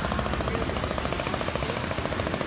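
A small river boat's engine running steadily with a rapid, even beat.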